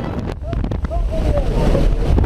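Wind buffeting the camera microphone over the drone of the jump plane's engine at its open door, growing louder through the second half, with a few brief shouted voices over the noise.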